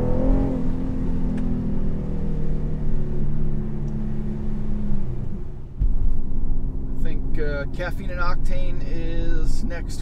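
Infiniti Q50 3.0t's twin-turbo V6 and exhaust heard from inside the cabin, holding a steady drone that sinks slightly in pitch as the car settles into a cruise after accelerating. There is a brief dip about halfway through, then the steady drone carries on.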